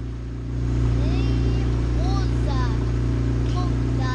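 Small boat outboard motor running steadily, growing louder just before a second in, with a child's high voice over it.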